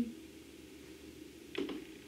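Quiet room tone with a faint steady hum, broken near the end by a woman starting to speak.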